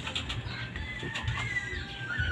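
A faint, thin, drawn-out bird call about halfway through, over low rumbling and rustling handling noise.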